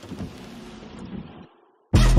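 Intro of a hip-hop music video: a soft rushing noise that gradually dulls and cuts out, a brief silence, then the track's beat with heavy bass drops in at the very end.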